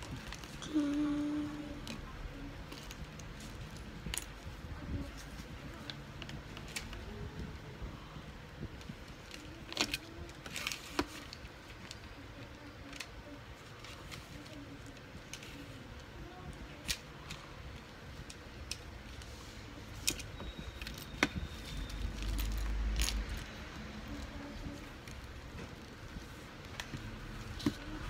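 Small plastic building bricks rattling as they are picked from a loose pile and handled, with scattered sharp clicks as pieces are snapped onto the baseplate.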